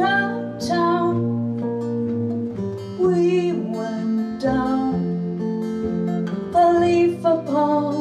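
Live acoustic music: a woman singing over a strummed acoustic guitar and a plucked upright bass.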